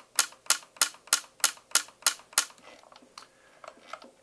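YAG laser firing a rapid series of shots: eight sharp clicks at about three a second, stopping about two and a half seconds in, with a few fainter clicks near the end. Each shot vaporizes part of a vitreous floater into tiny gas bubbles.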